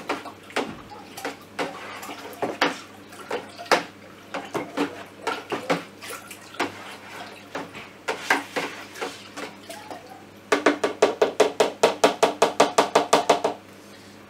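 Liquid sloshing and a stirring spoon knocking inside a plastic fermentation bucket as freshly yeasted mead must is mixed hard to aerate it. Irregular strokes at first, then a fast, even stirring of about eight strokes a second for the last few seconds.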